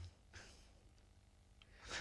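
Near silence in a pause in talk, with a man's soft breath a little under half a second in and another breath near the end, just before he speaks again.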